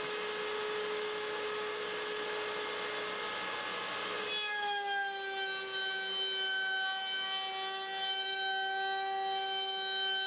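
Table-mounted wood router running with a steady high whine. About four seconds in, its pitch drops slightly and the tone grows stronger as the chamfer bit bites into the edge of a maple panel and the motor comes under load.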